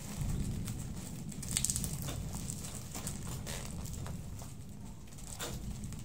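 Plastic courier mailer bag crinkling in short, scattered bursts as it is handled and opened, over a steady low rumble.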